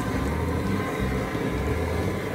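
Low rumble of wind buffeting the microphone, coming and going in gusts.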